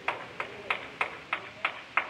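A run of about seven sharp, evenly spaced taps, about three a second, each with a short ring.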